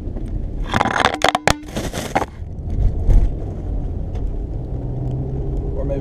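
An unclipped GoPro camera sliding and tumbling off a car's dashboard: a clatter of knocks and scrapes about a second in, lasting about a second and a half. After it comes the steady low rumble of the car's engine and road noise inside the cabin.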